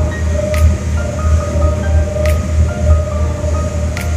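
Ferry's engine throbbing steadily in a low, pulsing rhythm over the rush of the boat's wake, with music playing over it.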